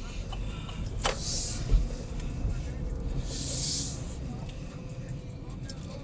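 Road and engine noise inside a moving car's cabin: a steady low rumble. There is a sharp click about a second in, a low thump just after, and a short hiss in the middle.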